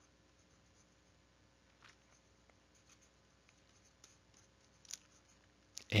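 Faint, sparse scratches and ticks of a stylus writing on a tablet screen, a few short strokes against a quiet room background.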